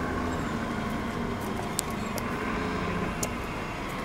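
Steady low hum of motor vehicle engine noise, with a few faint clicks.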